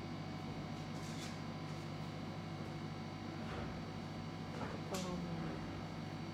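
Steady low hum of the room, with a few brief faint scratches from a fine black pen drawing on a paper tile, and a faint gliding sound about five seconds in.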